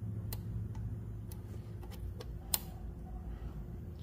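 Scattered small metallic clicks and ticks from handling a valve spring compressor on a cast-iron cylinder head while the valve spring is held compressed, the sharpest click about two and a half seconds in, over a steady low hum.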